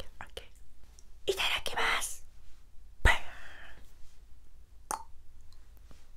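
A woman's breathy, whispered voice close to the microphone, coming in two short spells, with a short low thump about three seconds in.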